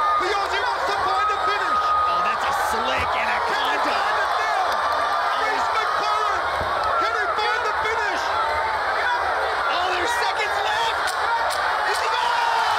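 Arena crowd shouting and cheering, many voices at once in a steady din.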